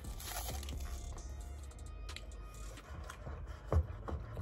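Paper straw wrapper being torn and crinkled, with a single sharp knock near the end, over faint background music.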